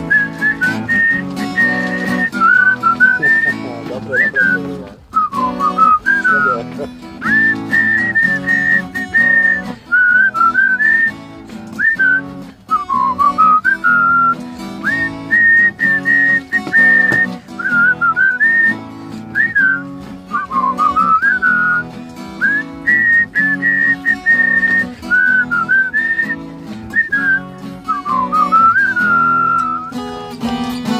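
A person whistling a melody of sustained notes and slides over strummed acoustic guitar chords, as the instrumental break of a blues song.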